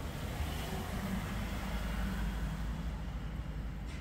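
Low, steady rumble of nearby road traffic, a little louder around the middle.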